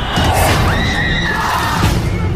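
Horror-film soundtrack: a high-pitched screech that rises about half a second in and holds until near the end, over a loud, noisy swell of music.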